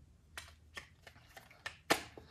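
Spray-gun parts clicking and tapping as they are handled: about six light, separate clicks, the loudest one near the end.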